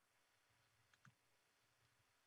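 Near silence, with a single very faint click about a second in.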